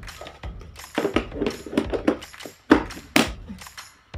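Plastic storage containers and skincare packaging handled and knocked together: a steady run of knocks, clatters and rattles, the two loudest knocks a little under three seconds in and just after three seconds. Faint background music underneath.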